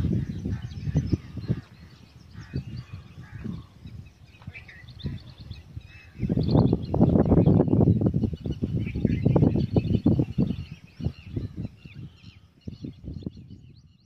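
Birds chirping and calling throughout, under loud low rumbling noise that comes in bursts: strongest at the start and again from about six to eleven seconds in.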